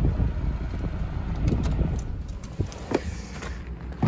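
Low rumble of wind and handling noise on a handheld phone microphone, with a few faint knocks and clicks.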